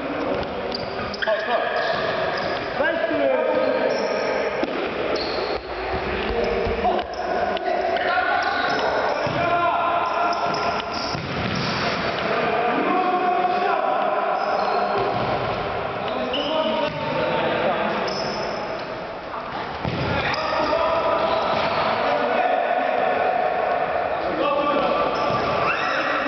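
A football being kicked and bouncing on a sports-hall floor in an indoor game, with players' voices calling out over it.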